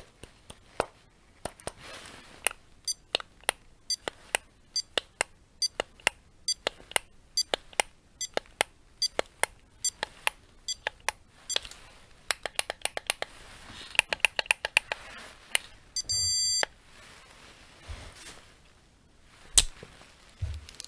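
Plastic handheld stud finder being handled close up: a long series of sharp clicks and taps from its buttons and case, with a quick run of clicks about 12 seconds in. About 16 seconds in it gives one steady electronic beep, under a second long.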